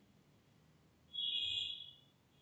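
A faint high-pitched tone starts about a second in, holds for most of a second and fades out.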